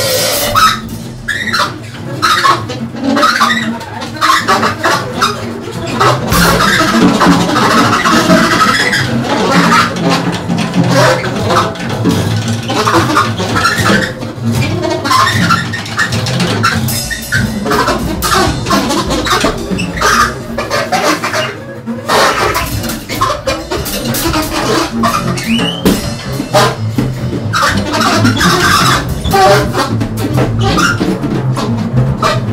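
Free-improvised jazz trio: a drum kit played busily with sharp cymbal and drum strokes, over an upright double bass, with alto saxophone lines. The playing is dense and loud and goes on without a break.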